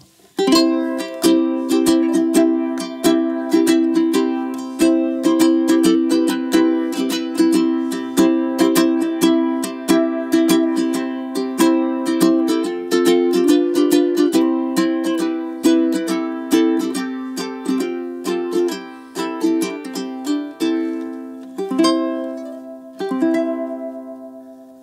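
Kanile'a K-1 T solid-koa tenor ukulele, strung with high G and Aquila strings, strummed in a steady rhythm of chords. The playing starts about half a second in and ends on a last chord left ringing as it fades.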